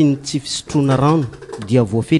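A man's voice speaking continuously, its pitch rising and falling.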